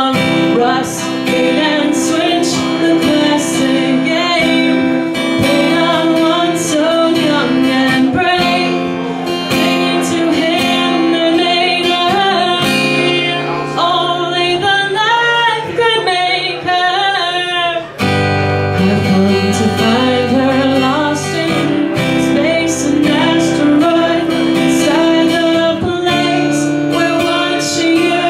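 A woman singing while strumming an acoustic guitar, a solo live performance. About two-thirds of the way through the sound dips sharply for a moment and the chord changes.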